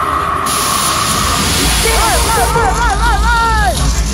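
Hip-hop DJ set over a festival PA. A rush of white-noise hiss comes in about half a second in, then a deep bass drops in, and a pitched sound swoops up and down about four times a second for nearly two seconds.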